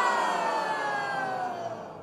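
Bowed string ensemble playing a long downward glissando, several parallel pitches sliding steadily down together and dying away near the end.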